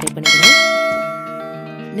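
A single bell-chime sound effect for the subscribe button, struck about a quarter second in and ringing as it slowly fades, over soft background music.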